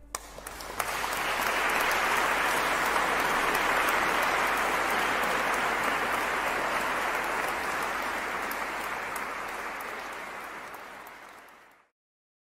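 Audience applause: a few first claps, then steady clapping that swells within about a second, holds, then slowly fades and cuts off just before the end.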